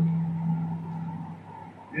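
Steady low electrical hum, as from a public-address system, under the fading reverberation of a man's amplified voice in a large hall.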